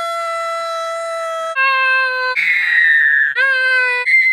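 A voice wailing in long held notes: one note held for over a second, then a lower note, a rough strained cry, and the lower note again, sliding up into it near the end.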